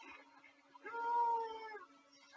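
A single drawn-out, meow-like call, about a second long and slightly falling in pitch, starting about a second in.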